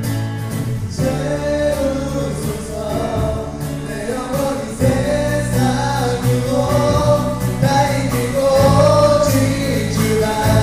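Live contemporary worship band playing and singing a gospel song, with voices singing the melody over keyboard, acoustic guitar, bass and drums. About five seconds in, the band fills out and gets louder.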